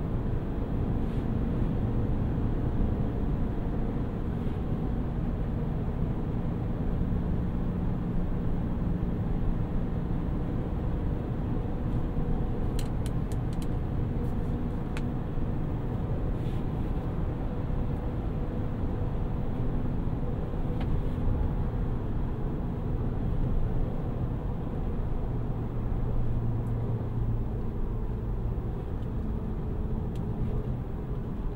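In-cab sound of a 2023 Chevrolet Silverado 1500 ZR2 Bison cruising at about 50 mph: a steady rumble from its 33-inch off-road tyres with a low hum from the 6.2-litre V8 underneath. A few light clicks come about halfway through.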